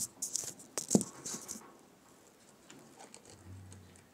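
Handling noise from a camera being set down on the model board: a quick run of knocks, taps and scraping rustles, with the loudest knock about a second in. Then it goes quiet, with a faint low hum near the end.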